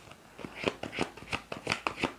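A tarot deck being shuffled by hand: a quick, uneven run of card snaps and clicks, about five or six a second, starting about half a second in.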